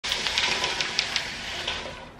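Horizontal window blinds being raised by their pull cord: a quick, irregular run of clicks and rattling from the slats and cord mechanism that dies away near the end.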